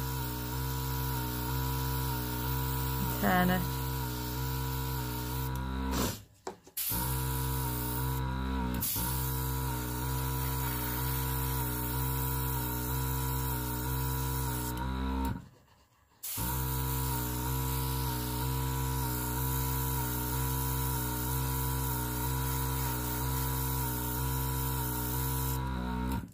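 Small airbrush compressor running with a steady motor hum, while the airbrush hisses as it sprays ink. The sound cuts out briefly twice, about six seconds in and again around the middle.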